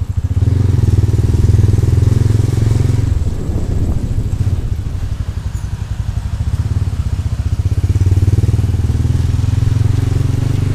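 Motorcycle engine running under way, recorded from the rider's helmet. It pulls harder about half a second in, eases off around three seconds, and picks up again near eight seconds.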